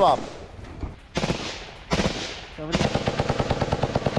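Automatic rifle fire. There are two long bursts starting about a second in, then rapid fire at about ten shots a second from just under three seconds in.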